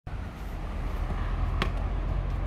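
Steady low rumble with one short, sharp knock about one and a half seconds in.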